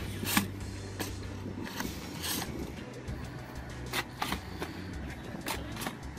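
Irregular sharp clicks, about eight over a few seconds, from a hand-held urea fertilizer injector as it is pushed into the soil and its needle works in and out, with music underneath.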